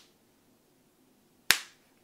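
Near silence, broken once by a single sharp click about one and a half seconds in.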